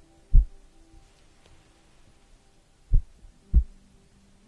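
Three soft, deep thumps, one about a third of a second in and two close together near the end, as a thin sheet is handled against a furry microphone windscreen. A few faint steady tones sit under them.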